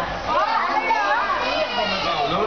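Children's voices: several young children talking and calling out as they play, with high-pitched chatter throughout.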